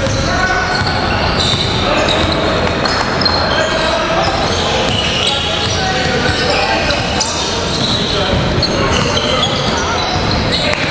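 Basketball game in an echoing gym: a ball bouncing on the hardwood court amid players' and spectators' voices.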